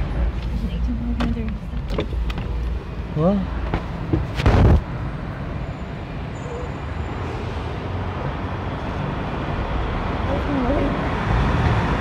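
Car driving, heard from inside the cabin: a steady low engine and tyre rumble with road noise that slowly grows, and one loud thump about four and a half seconds in.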